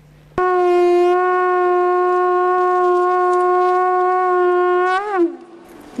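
One long note blown on a horn-like wind instrument. It starts abruptly, holds a steady pitch for about four and a half seconds, then bends and drops in pitch as it dies away.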